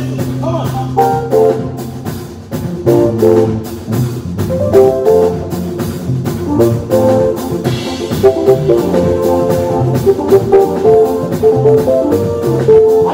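Live African praise band music: an electric keyboard on a piano sound plays quick makossa-style lead lines in place of a guitar, over steady drums and a bass line.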